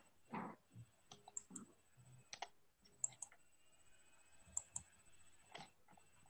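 Near silence with scattered small clicks and soft taps, among them three pairs of quick sharp clicks spaced about a second and a half apart.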